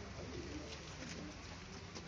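A dove cooing faintly, low-pitched, over a steady low outdoor background hum.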